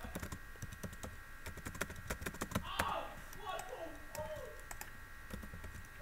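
Computer keyboard being typed on: a quick, irregular run of key clicks throughout.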